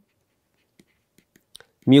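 A few faint, short ticks and scratches of a pen writing, in a near-silent room, with a man's voice starting right at the end.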